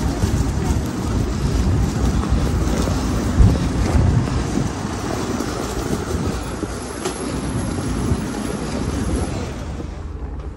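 Wind buffeting an outdoor microphone: an uneven low rumble with hiss that goes on throughout.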